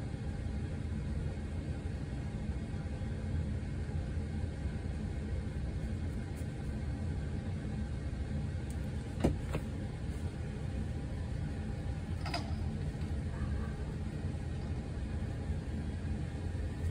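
Steady low hum of room noise, with two light clicks about nine seconds in and a fainter one about three seconds later.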